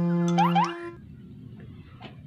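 Cartoon sound track: a held musical chord with two quick rising glides about half a second in, cutting off a little under a second in, leaving only faint low noise.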